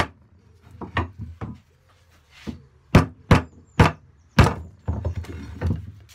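Wooden knocks and thunks on a workbench as a guide board is freed from bench holdfasts and the holdfasts are moved. There is one sharp knock at the start, then a quick run of four more between about three and four and a half seconds in, with softer rubbing and handling of wood in between.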